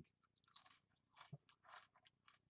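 A person chewing Cheez-It cheese crackers with the mouth close to the microphone: a few faint, irregular crunches about every half second.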